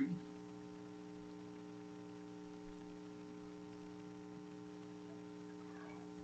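Steady electrical mains hum: a low buzz made of several steady tones.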